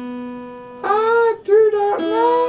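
A single acoustic guitar note rings and fades, then a man starts singing in a high voice about a second in, over the guitar.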